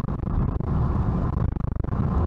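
Cabin noise of a 2017 Suzuki Swift with the 1.0 Boosterjet three-cylinder turbo engine, heard from inside while driving: a steady low rumble of engine and road noise.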